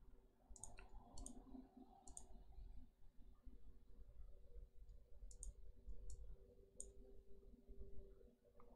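Faint, scattered computer mouse clicks, some in quick pairs, over a faint steady hum.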